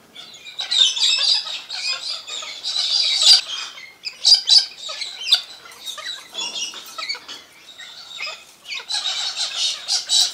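A flock of galahs (pink-and-grey cockatoos) screeching, many harsh calls overlapping with only brief lulls.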